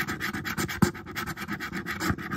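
A quarter scraping the latex coating off a scratch-off lottery ticket in rapid back-and-forth strokes, about ten a second, with one sharper stroke just under a second in.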